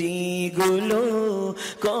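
A man singing a Bengali gojol, an Islamic devotional song, drawing out long wavering notes that slide up and down over a steady low drone.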